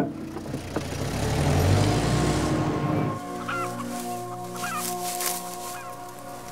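A rushing noise with a low rumble swells and fades over the first three seconds, then a few short chicken clucks sound over a steady music bed.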